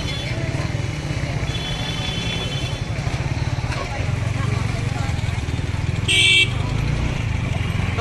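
Vehicle horns on a crowded road: a faint, longer horn about a second and a half in, and a short, loud horn toot about six seconds in, over a steady low rumble.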